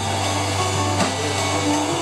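Live band playing an instrumental stretch without singing: steady held chords over a low, sustained bass note, with a drum hit about a second in.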